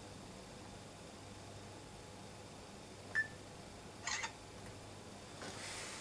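Camera taking a picture in a quiet room: a short click with a brief beep about three seconds in, then a short shutter sound about a second later, over a low steady hum.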